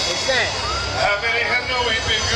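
Men's voices of a live gospel group singing and calling out, with the band behind them.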